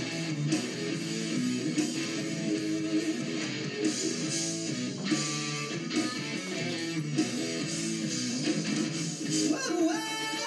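Rock band's instrumental passage without vocals: electric guitar over drums and bass guitar. Heard through a television's speakers, with almost no deep bass.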